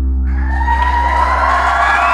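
A live band's final low chord rings out while an audience breaks into cheering and whooping about a quarter of a second in, swelling as it goes.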